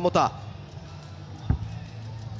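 A single short, sharp thump about one and a half seconds in, over a steady low hum.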